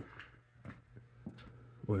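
A quiet pause: faint room tone with a few soft clicks, then a man's voice starting up near the end.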